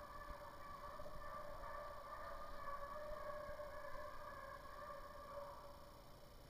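Young Walker hounds baying as they run a deer, their voices blending into a faint, wavering chorus that fades near the end.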